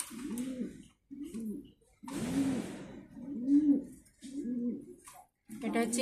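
Domestic pigeon cooing: about five low, arching coos in a row, roughly one a second.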